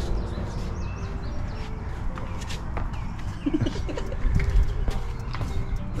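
A dove cooing in short level notes, over a steady low rumble and a few faint clicks.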